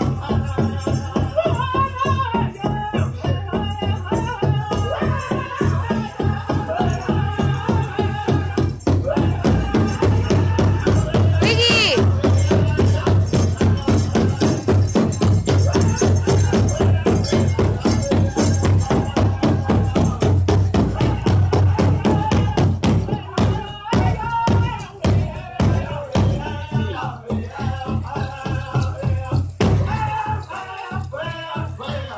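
Powwow drum group singing a fast fancy-dance song over a steady pounding big drum, with the jingling of the dancers' ankle bells.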